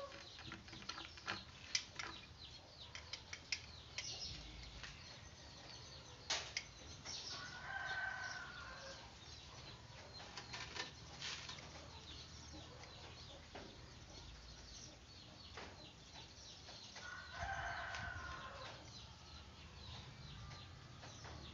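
Small animals rustling through grass, with scattered clicks throughout. Two drawn-out calls from an animal out of sight, each about a second and a half long, come near the middle and near the end.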